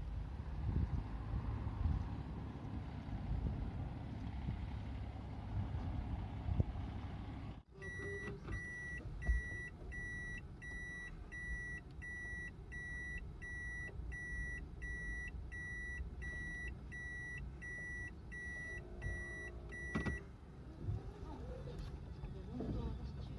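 Outdoor wind and low rumble in a car park, then a car's in-cabin warning beep: a single high tone repeating about twice a second for about twelve seconds before it stops, over the car's low engine rumble.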